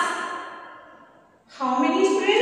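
A woman's voice trailing off in a breathy, sigh-like fade over about a second and a half, a brief near-silent pause, then her drawn-out speaking voice resumes near the end.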